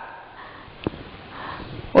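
A pause in a woman's speech: faint steady hiss, one short click a little before the middle, then a soft intake of breath near the end.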